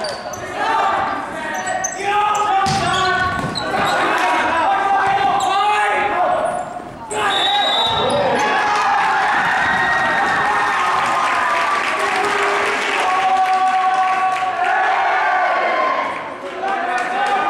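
Volleyball being hit a few times during a rally in an echoing gymnasium, with players and spectators shouting and calling throughout.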